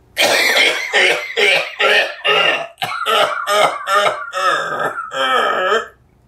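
A man making a rapid run of harsh, throaty vocal noises, about a dozen in a row, the last two longer and more voiced.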